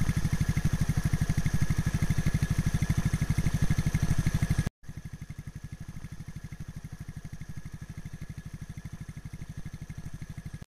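Kawasaki Teryx KRX side-by-side's parallel-twin engine running at low speed with an even, fast pulsing beat. A little before halfway the sound cuts out for an instant and comes back much quieter.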